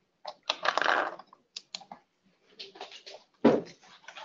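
Computer keyboard typing and clicking in short, scattered bursts over an open webinar microphone, with silence between the bursts and one louder knock near the end.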